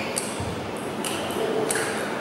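Table tennis rally: the celluloid-type plastic ball clicks sharply off the rubber bats and the table several times, about a stroke every half second or so, over the hiss of a large sports hall.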